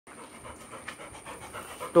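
Labrador retriever panting with its tongue out, a faint, evenly repeating breath.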